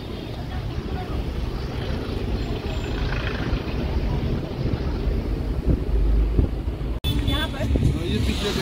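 Road and traffic noise heard from a moving vehicle, a steady low rumble with wind on the microphone, swelling louder about six seconds in. Near the end the sound cuts out for an instant and a voice comes in.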